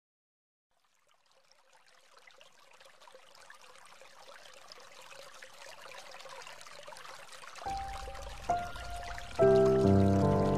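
Instrumental background music fading in: a faint trickling, water-like texture swells slowly, then sustained notes over a low bass come in late, and the full track starts loudly just before the end.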